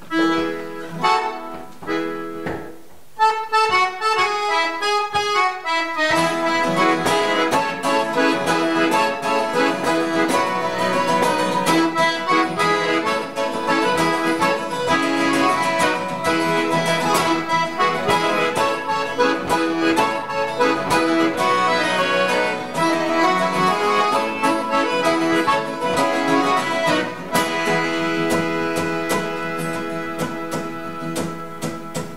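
Accordion and acoustic guitar playing an instrumental introduction in a folk style. The accordion holds chords at first; from about six seconds in both play together, the guitar strummed in a steady rhythm under the accordion's sustained chords.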